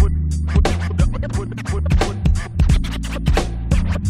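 Boom bap hip hop beat with turntable scratching over a heavy bass line and steady drums.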